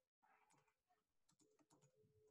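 Near silence, with faint computer-keyboard typing: a few soft, scattered key clicks.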